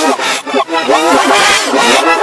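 A boy's yelling voice played backwards, pitch-shifted and layered into a distorted, garbled wall of sound.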